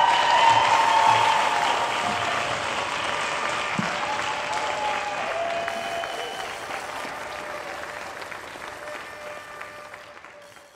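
Audience applauding and cheering at the close of a speech, loudest in the first second or so, then slowly dying away.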